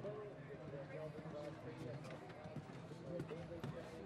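Indistinct voices of people talking, with scattered faint thuds of a horse's hooves cantering on dirt footing.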